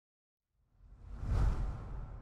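Whoosh sound effect with a deep rumble for an animated logo end card. It starts from silence about half a second in, swells to a peak near a second and a half, then fades slowly.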